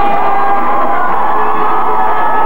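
Music for a baton twirling routine playing over a sports hall's sound system, with the audience cheering. A tone slides down in pitch during the second half.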